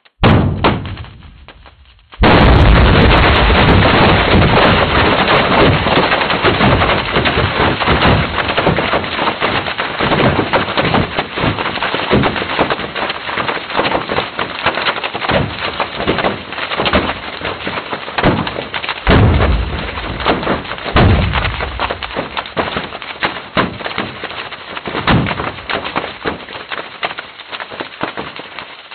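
Seismometer ground-motion recording of the magnitude 7.1 Ridgecrest earthquake, sped up 100 times into audible sound. A short jolt from an earlier, smaller quake at the start fades away. About two seconds in, the mainshock hits as a sudden loud rumble. It turns into a dense, continuous crackle of popping aftershocks that slowly weakens, with stronger low rumbling bursts from larger aftershocks twice, about two-thirds of the way through, and again a little later.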